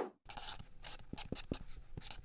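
Marker writing on a white board: a quick run of scratchy strokes and short taps as letters are drawn, starting about a quarter second in. A louder sound fades out in the first instant.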